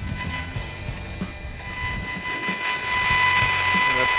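Audio output of a Gigahertz Solutions HF59B RF meter, a steady high buzz with a grainy hiss that grows louder about halfway through. It is the meter's sound for the radio-frequency signals it is picking up.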